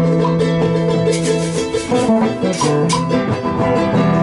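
Live acoustic folk ensemble playing: a small charango and an acoustic guitar strummed together, with a hand drum and stick percussion keeping the beat.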